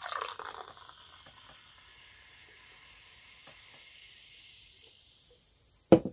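Chocolate-flavoured Dr Pepper soda poured from a can into a glass, followed by a steady soft fizz as the carbonation foams in the glass. A single sharp knock comes just before the end.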